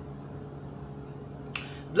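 A single short, sharp click about one and a half seconds in, over a faint steady low room hum.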